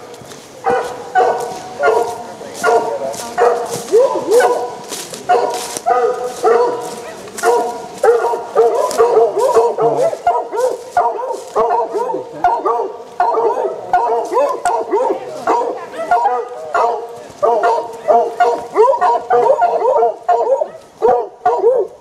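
A pack of foxhounds baying together, many overlapping cries without a pause. The hounds are marking to ground: the sign that a fox has gone to ground in an earth.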